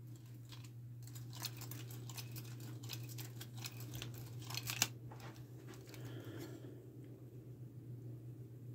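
Faint handling sounds of a leather glove fitted with riveted copper finger plates and knife blades as the hand flexes and moves: small clicks and rustles, busiest in the first half, with one sharper click about five seconds in. A steady low hum runs underneath.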